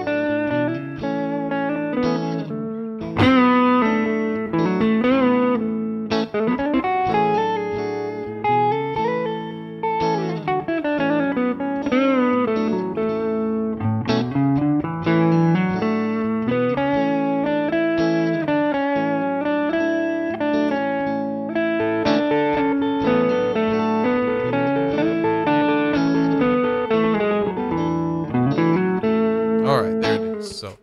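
Guitar playing a continuous melodic line in A major pentatonic with the D and G-sharp notes added, giving the sound of the full A major scale.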